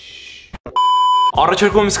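A short, steady electronic bleep tone of about half a second in the middle, the kind edited in as a censor bleep, with a man's speech starting right after it.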